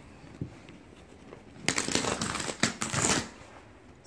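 Wall-to-wall carpet being pulled up at a corner, crackling and tearing free of the tack strip's pins in a burst of about a second and a half near the middle.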